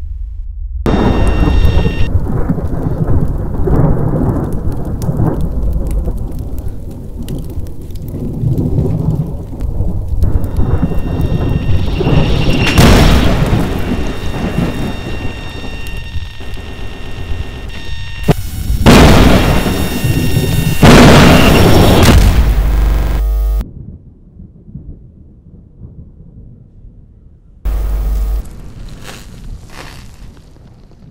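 Thunderstorm: heavy rain and rolling thunder with loud cracks about halfway through and again twice a little later. The storm cuts off suddenly about three-quarters of the way in, leaving a faint hum, then a short loud burst comes a few seconds before the end.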